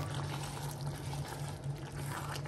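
Tomato-based stew simmering in a pot: a soft, steady bubbling with faint crackles, over a constant low hum.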